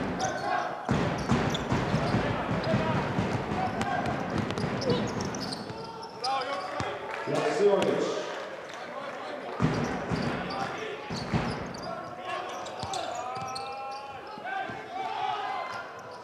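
Basketball being dribbled on a hardwood court in a large arena, with repeated ball bounces, players' and crowd voices, and short squeals late on.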